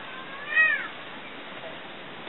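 A single high-pitched drawn-out call, rising and then falling in pitch, loudest a little over half a second in and ending before the first second is out.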